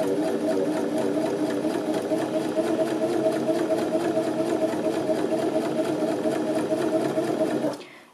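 Janome 725s Sewist sewing machine running at a steady speed, stitching the final pass along a narrow rolled hem; the motor cuts off just before the end.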